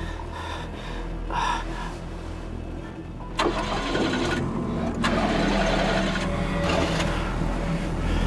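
Car engine starting about three and a half seconds in and running on, over a tense music score with a steady low drone.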